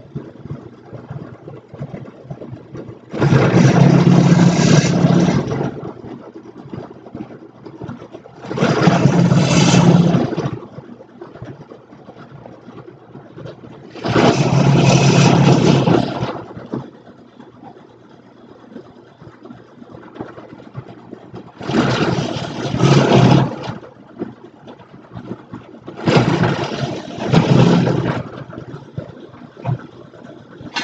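Benchtop drill press drilling a series of holes in a bracket plate. Five loud cuts of about two seconds each are spaced several seconds apart, and the motor runs steadily in between.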